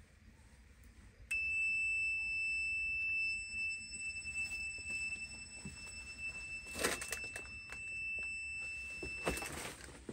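Ring-shaped ghost-detection sensor sounding its alarm, set off by a hand touching it: one steady high electronic beep held for about eight seconds, then cut off suddenly. A clatter of handling comes about seven seconds in, and another near the end as the device is set down on the ground.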